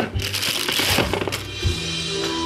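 Crinkling of a plastic bag and rustling against a moulded pulp-cardboard tray as a Roomba docking station is unwrapped and handled, with a single knock near the end. Faint background music runs underneath.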